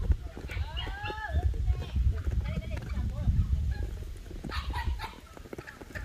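Outdoor wind rumbling on the microphone, with a few short gliding calls about a second in and scattered faint farmyard animal or voice sounds in the background.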